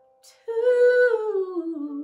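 A woman's singing voice takes a quick breath, then holds one long sung note that slides down in pitch about a second in and wavers with vibrato as it is held. A faint sustained piano chord is dying away at the start.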